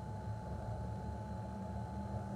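Steady low rumble of street traffic, with a faint steady whine above it.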